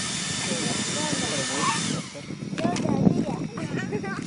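Handheld hairdryer blowing air into the intake of a model jet turbine to spin it up for starting: a steady hiss of rushing air with an even, high whine, cutting off about two seconds in.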